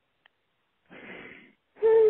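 A short breath heard over a phone line, a brief pitchless rush about a second in after a moment of near silence. A voice starts speaking just before the end.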